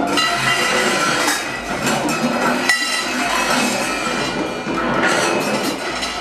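Free-improvised ensemble music: a dense texture of clinks and wood-block-like percussion strikes over several held tones, with a brief drop-out about three seconds in.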